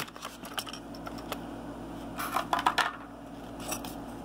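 Hard clear plastic blister packaging clicking and crackling as a die-cast Hot Wheels car is worked free of it. The clicks come in short clusters, the densest about two and a half seconds in.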